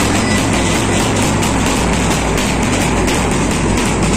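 Pipe band playing: bagpipe drones holding a steady low hum, with drumbeats.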